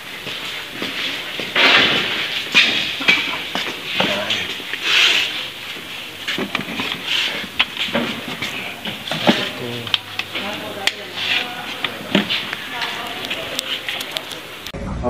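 Indistinct voices of people talking in a room, mixed with rustling and scattered knocks and clicks from a handheld phone being moved about.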